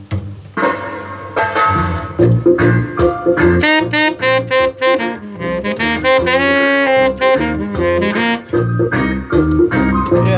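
Tenor saxophone playing short phrases, then a long held note about six seconds in, over a backing track with bass and organ.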